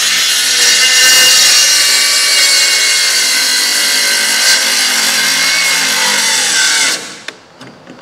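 Cordless circular saw with a dull blade cutting through a 2x4, running steadily, then cutting out about seven seconds in: the owner guesses the battery has died.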